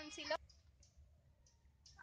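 A woman says a word, then a quiet pause in which faint, short high-pitched clicks repeat about three times a second.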